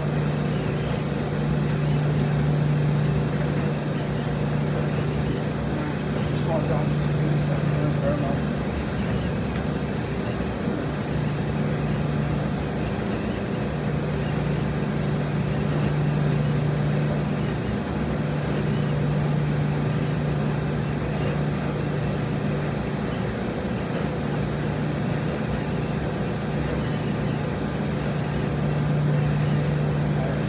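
Steady low hum and noise of laundromat machines running, the hum dropping out briefly a few times and coming back.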